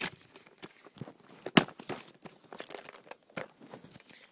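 Clear plastic packaging crinkling and crackling as it is pulled and torn open by hand, with one sharp, loud crack about one and a half seconds in.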